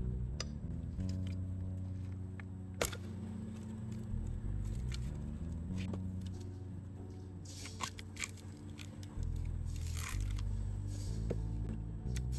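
Background music over a firewood log being split: one sharp knock about three seconds in, then the wood fibres cracking and tearing as the split piece is pulled apart into two halves, near eight and ten seconds.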